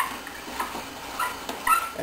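Hand brace turning a half-inch bit down through the edge of a plywood strip, with the wood creaking and scraping quietly and a few short squeaks.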